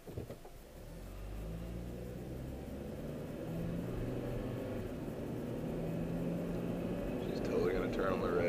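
Car pulling away from a standstill, heard from inside the cabin: the engine note starts about a second in and rises as the car accelerates, with road and tyre noise building steadily.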